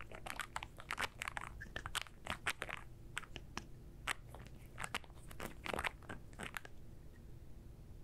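Close-miked fingertips working cuticle oil into nails, giving an irregular run of small clicks that thins out near the end.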